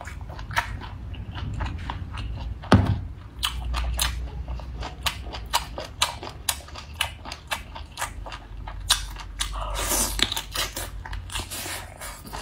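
Close-miked eating sounds of a person biting and chewing cooked seafood: a dense run of wet clicks and smacks, several a second. A sharp, loud bite comes about three seconds in, and a longer rustling stretch about ten seconds in.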